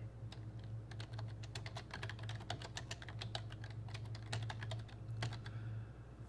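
Computer keyboard typing: a run of quick keystrokes that starts about a second in and stops shortly before the end, over a steady low hum.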